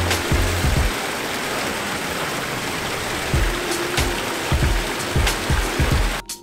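Water steadily splashing and trickling from a fountain of stacked steel drums, thin streams pouring from holes in the drums into a shallow pool. Background music with a bass beat plays under it, dropping out for a couple of seconds after the start and coming back about halfway through.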